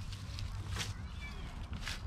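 Dry leaves and stones rustling and crunching as someone crouches and stands on a rocky bank, with two sharp crackles about a second apart, over a low wind rumble.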